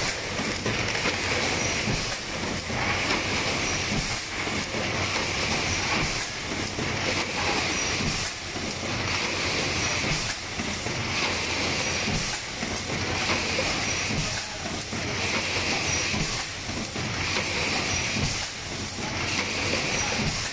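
Six-cavity PET stretch blow moulding machine running in production: a steady hiss of compressed air with a pneumatic blast and a clack of the moulds and transfer gear about every two seconds, one for each blowing cycle.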